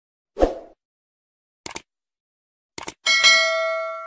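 Subscribe-button animation sound effect: a soft pop, two quick double clicks about a second apart, then a bright bell ding that rings on and fades over more than a second.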